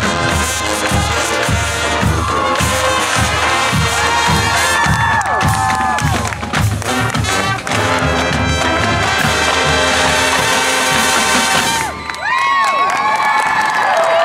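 College marching band playing the closing bars of its show: sousaphones and brass sustaining chords over steady drumline hits, with the drums cutting off about twelve seconds in. A crowd cheers and whoops over the final bars and after the cutoff.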